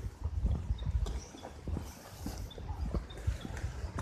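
Footsteps and the rustle and knocks of a handheld phone being carried while walking, with a low rumble of wind on the microphone.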